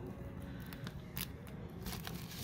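Clear plastic sleeves on a stack of old paper programs crinkling and rustling as they are handled and shuffled, with a few short crackles.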